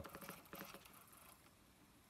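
Near silence, with a faint whir and light ticking from the CD player's disc mechanism as it spins the disc and the laser tracks. It dies away after about a second.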